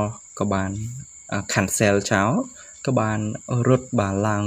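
A man's voice narrating in speech, with a steady high-pitched tone running underneath.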